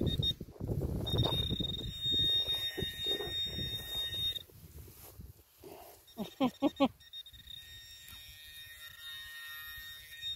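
Garrett pinpointer sounding a steady high tone for about three seconds, falling silent, then sounding again through the last three seconds, the sign that the probe is on a metal target in the dug hole. Soil and grass rustle under hands in the first half, and a short voice sound comes between the two tones.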